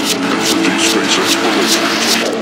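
Psytrance breakdown without the kick drum: layered synth tones that waver and glide over a high hi-hat ticking about four times a second.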